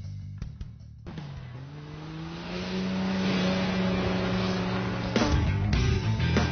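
Four-wheel-drive mud racer's engine revving up. The pitch rises over about a second, is held at high revs for a few seconds, then breaks off.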